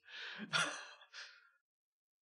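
A man laughing softly through his breath: three short breathy puffs of laughter over about a second and a half, then it stops.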